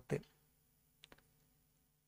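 Two faint clicks close together about a second in, a computer mouse button being clicked while the next line of the slide is brought up, against quiet room tone.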